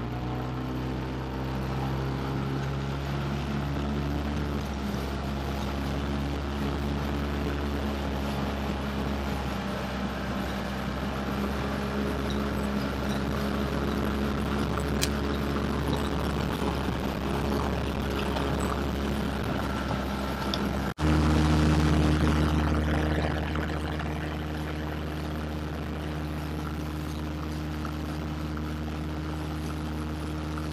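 Small outboard motor pushing an inflatable dinghy, running steadily at cruising speed with a constant engine drone. About 21 seconds in the sound cuts off abruptly and comes back louder, with a steadier, deeper engine tone.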